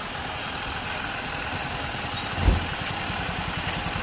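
Freshly overhauled Renault Kwid three-cylinder petrol engine idling steadily and quietly on its first run-in after the rebuild, sounding nicely silent. A brief low thump about two and a half seconds in.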